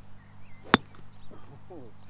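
A Heavenwood fairway-style club strikes a golf ball off the fairway: one sharp crack about three-quarters of a second in.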